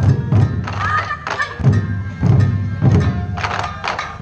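Ensemble of Japanese taiko drums struck in rhythm, heavy deep beats coming about three times a second.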